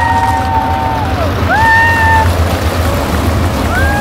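Several sprint car engines revving hard together as a pack accelerates down the front straight, their notes rising and holding high. A fresh engine note climbs about one and a half seconds in and another near the end.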